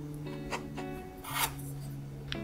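A knife blade cutting down through a slab of nama chocolate onto a wooden cutting board, with a short rasping scrape about one and a half seconds in and a light click before it. Background guitar music plays throughout.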